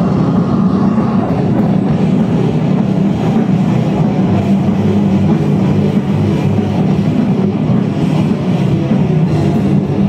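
Rock/metal band playing live: distorted electric guitars, bass and drum kit, loud, dense and unbroken.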